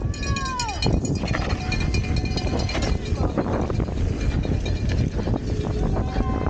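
Wind rushing over the camera microphone and a Graziella folding bike rattling as it rolls fast down a rough dirt trail. There is a high whistling tone that falls in pitch in the first second, and thin, steady high squealing tones through the first half.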